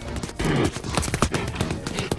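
Tap-dance footwork: a rapid, uneven run of clicking taps from a penguin's feet on ice.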